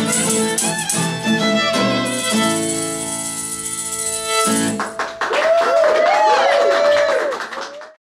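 Fiddle and acoustic guitar closing out a country song on a long held chord, then a stretch of sliding notes that rise and fall before fading out at the very end.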